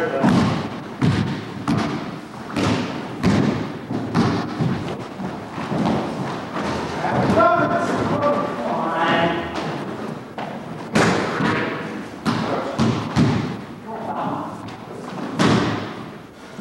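Indoor basketball play on a hardwood gym floor: a ball bouncing and feet thudding, many sharp thumps with a short echo after each. Voices call out briefly around the middle and again near the end.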